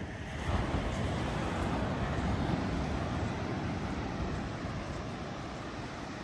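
Surf washing on a sandy beach, with wind rumbling on the microphone: a steady rush that swells about half a second in.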